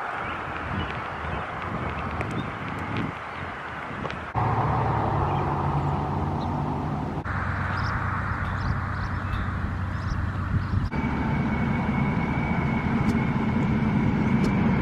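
Outdoor road traffic: passing and running car engines with steady hum, the background changing abruptly several times. A steady high tone over a low hum runs through the last few seconds.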